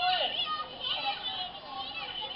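Children's voices shouting and chattering together in a party crowd, loudest right at the start, heard as a TV's playback.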